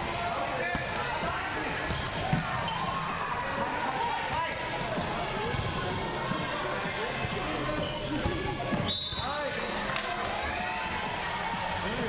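Volleyball rally in a large indoor hall: the ball being struck by players' hands and arms, with the loudest hit about two seconds in. Players' voices call and chatter throughout.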